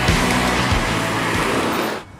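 Rock backing music with a broad rush of road and engine noise as a Datsun redi-GO hatchback drives past close by. Both fade out near the end.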